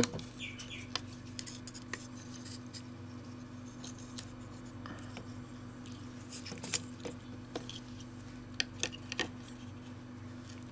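Scattered small clicks and scrapes of a screwdriver undoing tiny screws and of circuit boards being lifted and handled inside an opened Spektrum DX7 radio transmitter, over a steady low hum.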